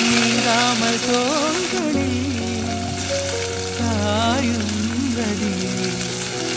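Chopped onion frying in hot oil in a pot, a steady sizzle, heard under a song with a singing voice.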